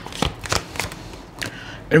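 A deck of tarot cards being shuffled by hand: a string of quick, light card snaps, about three a second.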